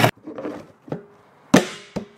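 A few hard knocks as a plastic toilet flange is handled and pressed into a freshly cut hole in the bottom of an upturned plastic 55-gallon drum. The loudest, about one and a half seconds in, rings briefly in the hollow drum.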